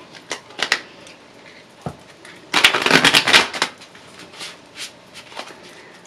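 Tarot cards being shuffled by hand: a few light snaps, then a dense run of quick card flicks lasting about a second in the middle, then scattered soft ticks.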